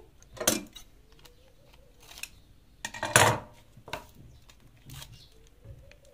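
Clear packing tape being pulled off its roll in two short rips, the second and louder one about three seconds in, with light clicks and knocks as it is handled at the sewing machine.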